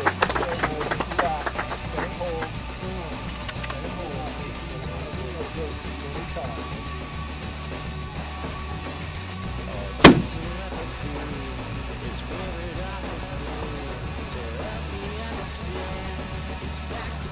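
A single shot from a large-calibre extreme-long-range rifle about ten seconds in: one sharp crack with a short echo, over steady background music.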